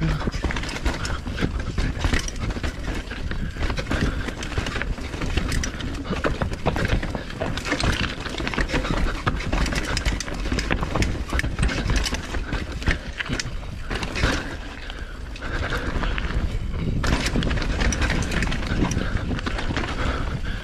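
Mountain bike descending a rough downhill trail: tyres and bike clattering over the ground with many sharp knocks, over a steady low rumble.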